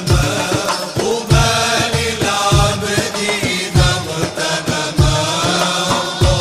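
Male voice singing an Arabic Islamic nasheed with long, melismatic phrases over a steady beat of hand drums.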